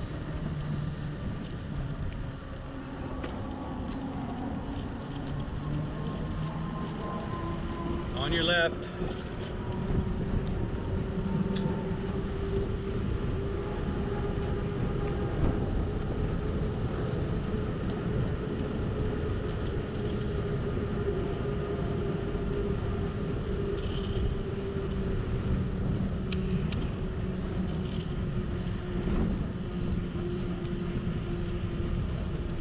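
Wind on the microphone and tyre noise from a bicycle rolling along a paved trail, with a steady hum underneath and a brief warbling sound about eight seconds in.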